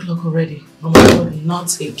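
A woman talking, with a loud door thud about a second in.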